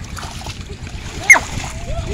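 Splashing and sloshing of hands and legs working through shallow muddy canal water while fishing by hand, with people's voices faintly in the background. A little past halfway, a brief, loud sound that drops quickly in pitch.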